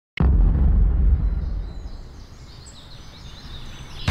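Intro sound effect of a GoPro Studio logo animation: a deep boom that starts suddenly and fades out over about two seconds, with faint high chirps as it dies away.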